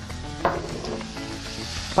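Sliced mushrooms and onion frying in oil in a pan, a steady sizzle.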